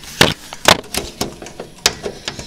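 Screwdriver and screw knocking against the steel PC case while the graphics card's bracket is screwed into the expansion slot: about four sharp metallic clicks, the loudest shortly after the start and near the end.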